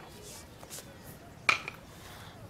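Quiet room tone with one sharp click about one and a half seconds in, and a fainter click just after it.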